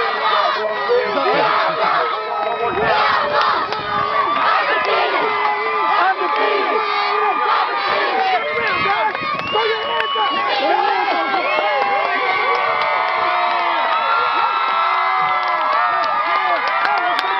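A youth football team of young children and their coaches cheering and shouting together in a huddle, many voices overlapping without a break.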